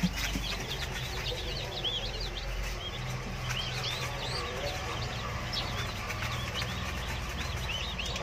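A brood of a few-days-old Fayoumi and baladi chicks peeping: many short, high cheeps overlapping all the way through.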